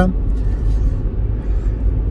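Deep, steady rumble of a car heard from inside its cabin.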